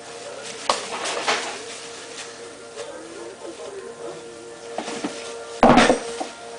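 White tissue paper rustling and crinkling in short bursts as a toddler pulls and scrunches it, over a faint steady hum. A loud burst of noise near the end.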